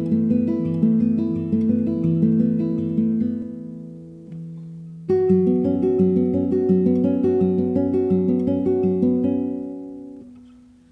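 Classical guitar played solo, picking a repeating arpeggio pattern of ringing notes in two phrases. The first phrase fades out about four seconds in, a single note sounds, and the second phrase starts about five seconds in and dies away near the end.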